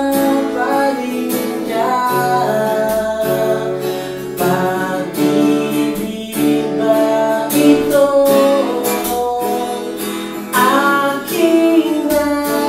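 A man singing while strumming an acoustic guitar in a steady rhythm.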